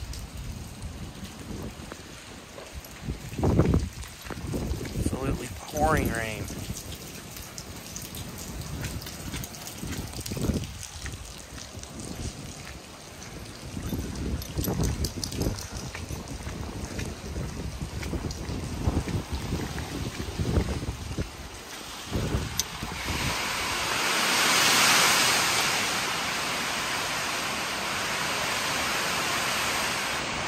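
Rain falling, with gusts of wind buffeting the microphone as low rumbling thumps. A brief wavering pitched sound comes about six seconds in. A broad rain hiss swells and holds over the last several seconds.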